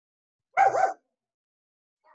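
A dog barking, one short double bark about half a second in, picked up over a video call.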